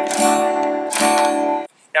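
Acoustic guitar strummed with a pick on a D chord: two strums about a second apart, each left to ring. The sound is cut off shortly before the end.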